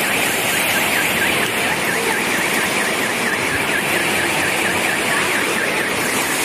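Steady noise of heavy rain and rushing floodwater, with a car alarm warbling rapidly, several times a second, on top.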